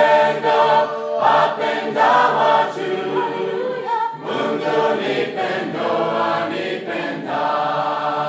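A group of voices singing a Swahili hymn a cappella in several-part harmony, in short phrases with brief breaths between them.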